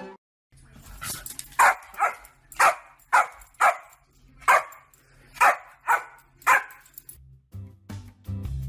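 Dog barking repeatedly at a parrot, about nine short, sharp barks roughly half a second apart.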